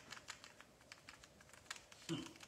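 Faint, irregular light clicks and taps of small wooden cutout pieces being picked up and set down on a tabletop, one a little louder near the end.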